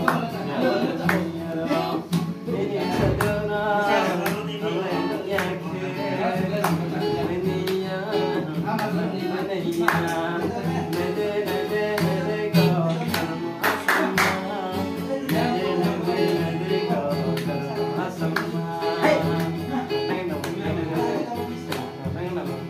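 Acoustic guitar strummed in a steady rhythm while a man sings along, with hand claps keeping time.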